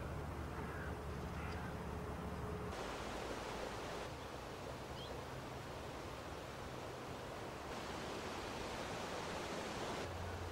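Steady outdoor background hiss, with a couple of faint short bird chirps. The background noise changes in character about three seconds in. No shot is heard.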